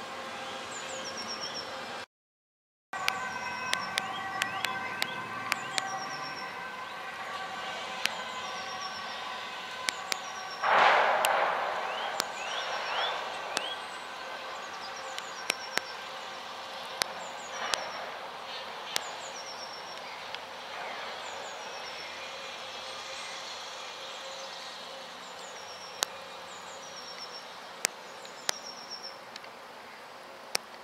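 Outdoor town-park ambience: a steady hum of distant traffic with small birds chirping again and again over it, and scattered sharp clicks. A louder burst lasting about a second comes about eleven seconds in, and the sound cuts out briefly about two seconds in.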